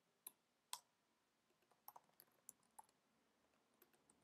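Faint typing on a computer keyboard: scattered single keystrokes, two sharper clicks in the first second and a few more around two seconds in.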